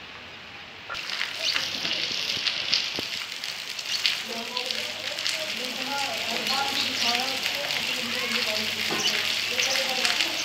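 Steady rain falling on rooftops: an even hiss of patter with scattered drop ticks, stepping up in level about a second in. Faint voices are heard underneath from about four seconds in.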